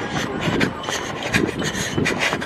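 Repeated rasping, rubbing noise from a handheld camera carried by a running person, coming in uneven strokes in time with the running.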